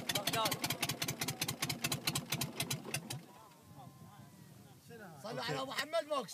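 The old boat's failing diesel engine chugging in rapid, even beats, then cutting out suddenly about three seconds in as it dies. Voices follow near the end.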